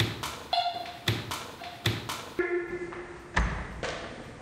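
A thrown tomato being dropped and bruised: a run of light taps and knocks, then one heavier thud about three and a half seconds in.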